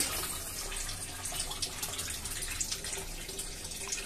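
A thin stream of water falling into an aquaponics fish tank, splashing steadily on the water surface: the system's recirculated water returning to the tank.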